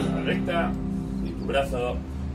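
Background music with steady held chords and a voice singing over them in short phrases.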